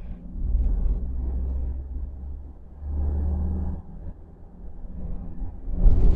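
Low rumble of a car's engine and tyres heard from inside the moving car's cabin, swelling twice, with a brief louder whoosh near the end.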